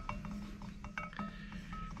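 Faint clicks and short metallic squeaks from the threaded adjusting screws of a VicRoc UB-302 hydraulic U-bolt bender as the side wheels are spun by hand, over a steady low hum.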